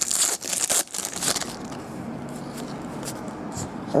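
A foil trading-card pack being torn open and crinkled by hand: a quick run of sharp rips over the first second and a half, then quieter handling.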